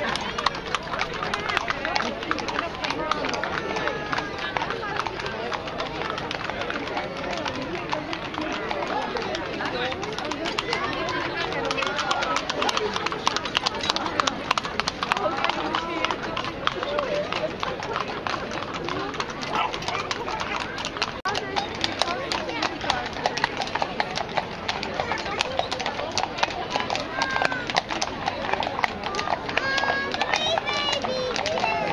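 Horses' hooves clip-clopping on a brick street as horses and horse-drawn carriages pass, over steady chatter from a crowd of onlookers.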